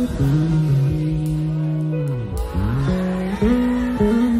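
Live worship band music: guitars and bass hold low chords with little singing. A little past halfway the notes swoop down in pitch and slide back up before the chord returns.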